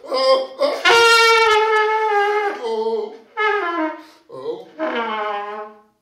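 Solo trumpet playing a free improvised phrase: a few short notes, then a long held note from about a second in, then shorter notes that bend downward in pitch, the last one sliding down and stopping just before the end.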